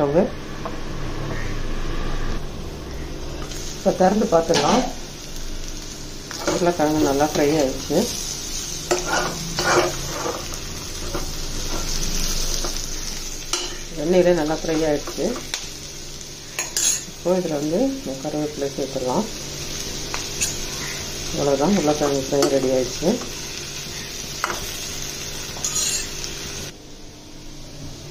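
Potatoes sizzling as they fry in a stainless steel kadai, with a metal spoon stirring them and clinking and scraping against the pan. Short wavering pitched sounds recur every few seconds over the frying.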